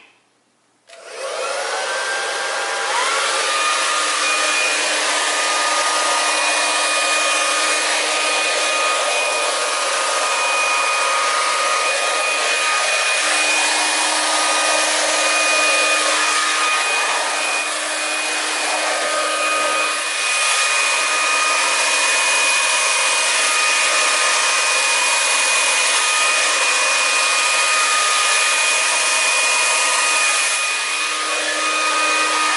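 Handheld hair dryer switching on about a second in, its whine rising over a couple of seconds as the motor spins up, then running steadily at full blow.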